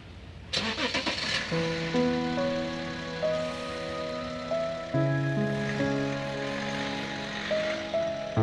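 A car engine starting about half a second in, followed by slow background music with held chords that come in a second later and change every second or two.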